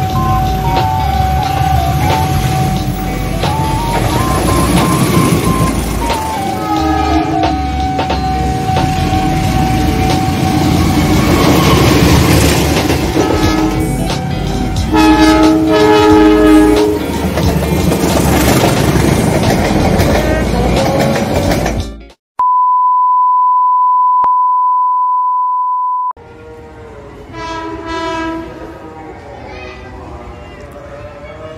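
Diesel locomotive-hauled train passing close by, a loud rumble of engine and wheels, with the locomotive horn sounding two blasts about halfway through. The train sound then cuts off suddenly and a steady pure beep tone holds for about four seconds, followed by much quieter background.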